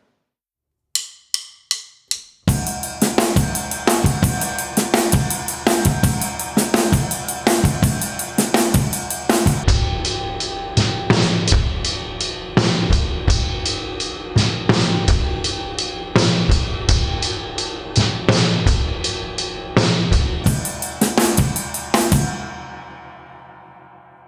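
Drum kit playing a groove in 5/8 time, grouped three plus two (counted 1-2-3-1-2), with bass drum, snare and cymbals. Four short clicks come about a second in before the groove starts, and it ends on a cymbal ringing out and fading near the end.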